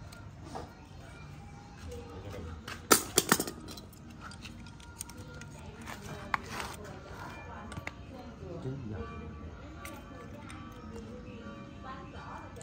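Metal parts and tools being handled: a few sharp metallic clicks and clinks about three seconds in, then lighter clicks, over faint background voices and music.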